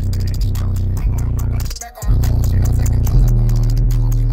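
Loud bass-heavy music played through two DB Drive WDX G5 10-inch subwoofers on a Rockford Fosgate 1500bdcp amplifier at 2 ohms, heard inside the truck cab. The bass notes cut out briefly just before two seconds in, then come back.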